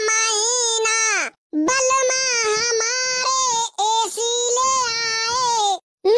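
A high-pitched voice singing three long, drawn-out phrases held on nearly one note, with short breaks between them.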